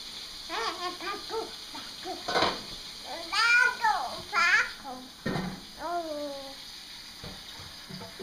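A baby babbling and calling out wordlessly to ask for a popsicle: a run of short syllables, then louder drawn-out calls that rise and fall, the loudest in the middle, and a last falling call.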